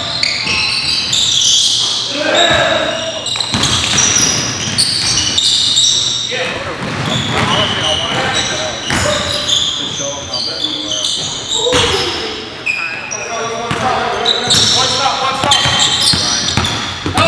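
Basketball being played on a hardwood gym floor: the ball bouncing, many short high squeaks of sneakers, and players' voices ringing around the large hall.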